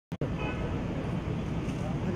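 Steady outdoor traffic noise with indistinct voices of people mixed in.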